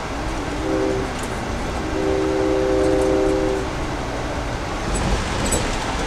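Locomotive air horn sounding a short blast and then a longer one, heard from inside an Amtrak passenger coach over the steady rumble of the moving train. A few light knocks come near the end.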